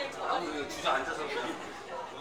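Indistinct chatter of several people talking in a crowd, no single voice clear.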